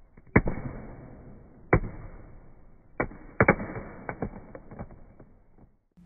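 A series of sharp cracks, each with a short tail: a strong one about a third of a second in, another just before two seconds, a close pair around three and a half seconds, then lighter ticks. The sound is muffled, with no treble.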